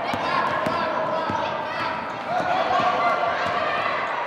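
A basketball being dribbled on a hardwood gym floor, with repeated bounces, under a steady background of children's voices echoing in the gym.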